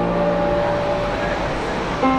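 City road traffic running past, heard through a short gap in the music, with one held note fading out about a second and a half in.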